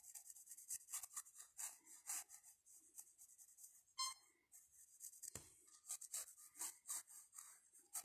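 Faint scratching of a graphite pencil on paper in short, irregular sketching strokes. A brief high squeak about halfway through.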